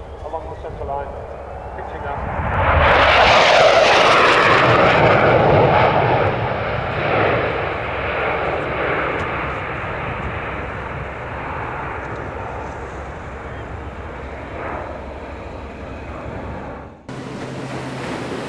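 Blackburn Buccaneer's twin Rolls-Royce Spey turbofans in a flypast: the jet noise builds over the first few seconds, is loudest a few seconds in, then slowly fades as the aircraft moves away, cutting off abruptly near the end.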